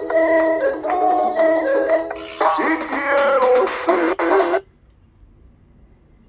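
Spanish-language pop song with singing, played from cassette on a 1983 Philips D6620 portable mono cassette recorder through its small speaker. It sounds thin, with little bass, and cuts off suddenly about four and a half seconds in, leaving only a faint hiss.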